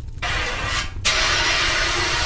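Fire extinguisher discharging with a loud hiss in two bursts: a short one, then after a brief break a longer, stronger one, putting out a fire.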